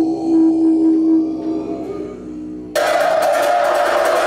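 Tibetan monks' low, steady held chant, which fades about two seconds in. Near the end it cuts suddenly to gyaling horns sounding a bright, sustained tone over clashing cymbals.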